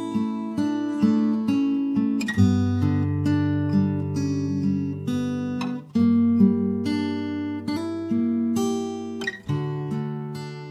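Instrumental backing track with no vocals, led by acoustic guitar picking out slow chords. A new chord is struck about every three and a half seconds, with single notes ringing in between.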